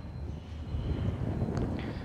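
A steady low rumble with the faint squeak of a marker being written across a whiteboard.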